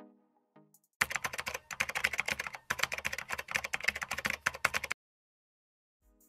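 Rapid computer-keyboard typing clicks, added as a sound effect. They come in two runs, starting about a second in with a brief break near the middle, and stop about a second before the end. The first second holds only the faint tail of a short musical sting.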